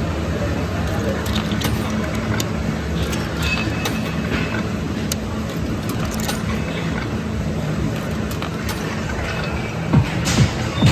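Coins being fed one at a time into a claw machine's coin slot, making short clicks and clinks over the steady din of arcade background noise.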